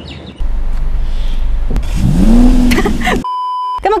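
A Mercedes-Benz convertible's engine runs with a deep rumble and revs up, rising in pitch, about two seconds in. Then a short electronic beep sounds for half a second and cuts off sharply.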